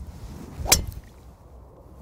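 Golf driver striking a teed ball: one sharp crack of clubface on ball about three-quarters of a second in, a clean strike hit on the way up.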